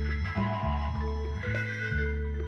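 Jazz-rock band playing live: held organ-like chords and a wavering melodic line over changing electric bass notes, without drums.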